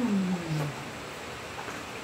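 A man's voice trailing off on a drawn-out vowel that falls in pitch, ending within the first second, followed by a pause with only faint room noise.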